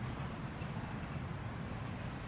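Boat outboard engine idling, a steady low rumble.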